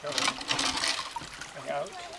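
Water splashing and trickling as a kayak stabilizer arm's float is lowered into the lake beside the hull, a noisy burst in the first second that then dies down.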